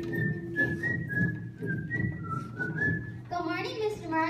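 A person whistling a short tune: a run of clear single notes stepping up and down, which stops about three seconds in.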